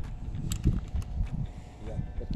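Light clicks and handling noise from a stainless semi-automatic pistol being handled, over a low rumble on the microphone; no shot goes off.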